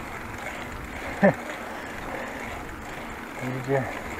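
Steady rushing wind and tyre noise from a moving bicycle, picked up by a handlebar-mounted camera, with one short sound falling in pitch about a second in.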